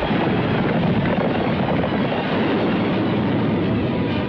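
Loud, steady battle din of an army charging: a dense rumble of many horses and men with no single clear sound standing out.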